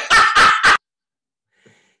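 A man laughing out loud in four or so short, loud bursts that cut off abruptly under a second in, leaving dead silence.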